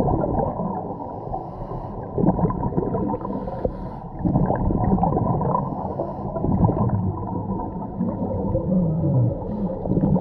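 Muffled underwater sound of scuba regulator exhaust bubbles gurgling in uneven surges, with a low rumble and a couple of low wavering tones near the end.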